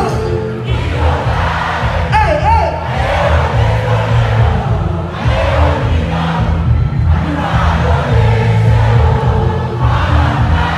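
Live band music with heavy bass, loud and continuous, under a large crowd cheering and singing along.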